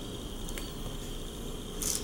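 Quiet room tone with a faint steady hum, a light click about half a second in and a short soft hiss near the end as a hand lifts a cut chunk of candle wax.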